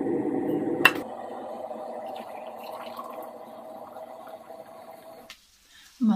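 Water boiling in a kettle. The rushing bubbling is loud at first, a sharp click comes about a second in, and then the boil dies away steadily until it cuts off.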